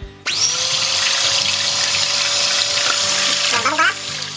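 Electric hand mixer switching on about a quarter second in, spinning quickly up to speed and then running steadily as its beaters whisk egg, milk and butter batter liquid in a stainless steel bowl until it froths.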